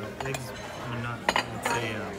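Cutlery and plates clinking on a table: several short, sharp clinks of metal on china.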